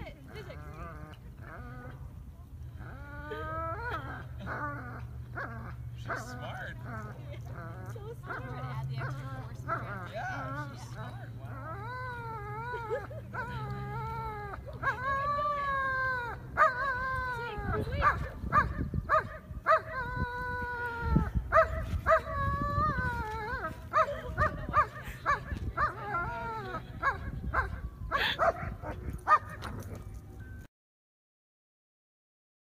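A dog whining and yelping in high cries that bend up and down in pitch, some drawn out for about a second. In the second half they turn into short, sharp yips in quick succession.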